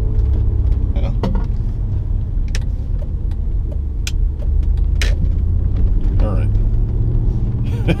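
Moving car heard from inside the cabin: a steady low rumble of road and engine noise, with a few short, sharp clicks now and then.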